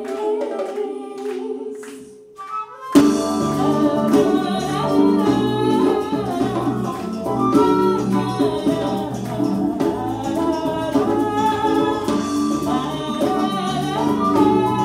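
Live band playing a Latin-rhythm song: a woman singing over electric guitar, bass, drum kit and hand drum. The music thins to a few percussion taps and a held note at first, then the full band and voice come back in loudly about three seconds in.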